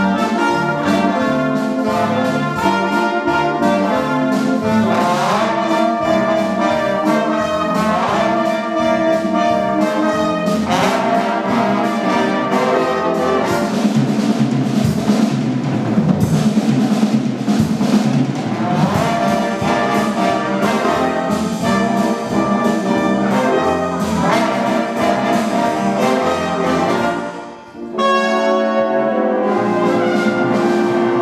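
A youth band with saxophones plays a piece of music in a church. The music breaks off briefly about two seconds before the end, then carries on.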